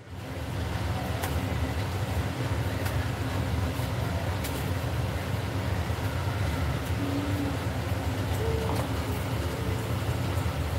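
A steady low rumble, with a few faint clicks and brief faint tones over it.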